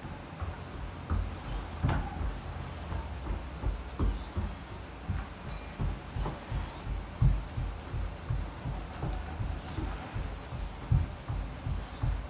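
Running footsteps on an indoor floor: a steady run of dull thumps, a few a second.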